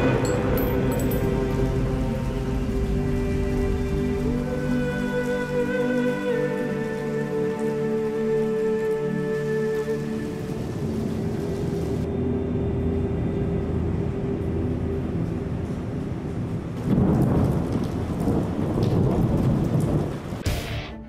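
Steady heavy rain under a slow, sustained music score of held chords that thins out about halfway through. Near the end a louder surge of low rumbling noise rises over the rain.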